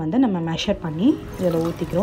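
A woman speaking, with water poured from a plastic mug into a steel pot of broth near the end.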